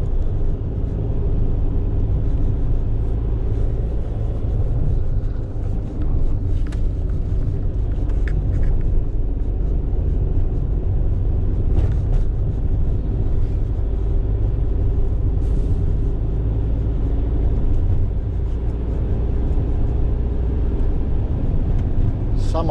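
Fiat Ducato van's engine and road noise heard from inside the cab while driving, a steady deep rumble with an even engine hum.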